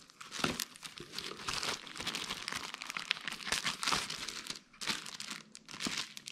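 Clear plastic bags crinkling as they are handled and lifted out of a cardboard box: irregular, continuous rustling with a short lull near the end.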